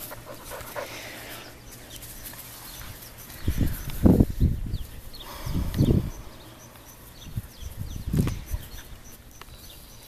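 Panting breaths close to the microphone, with loud puffs about four and six seconds in and a softer one near eight seconds.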